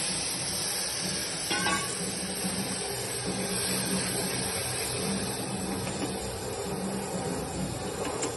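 Steady hiss of water steaming and boiling up in a pressure cooker just after it was poured onto hot oil and fried spices.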